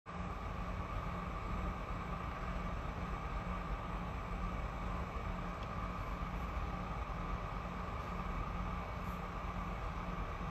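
Steady room noise, a low hum with a hiss over it, holding level throughout. No speech.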